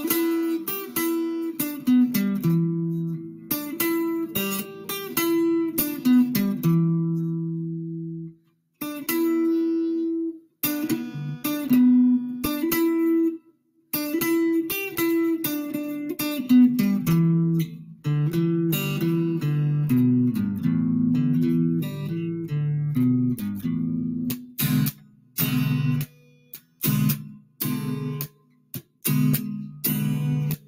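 Solid-body Stratocaster-style electric guitar playing a country song's tune as an instrumental: picked notes and chords ring clearly, with a few brief stops about 8, 10 and 13 seconds in. Toward the end the playing turns to short, clipped strums with gaps between them.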